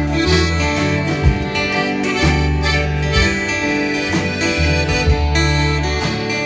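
Instrumental break of a live folk-country band: acoustic guitars strummed about once a second over sustained bass notes and piano, with a held melodic lead line above.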